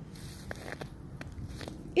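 Footsteps in fresh snow: a handful of faint, short crunches scattered over a low steady rumble.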